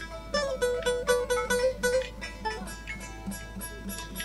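Bağlama, the long-necked Turkish folk lute, playing an instrumental passage of a folk tune. It picks a run of quick notes over the first two seconds, then softer, sparser picking.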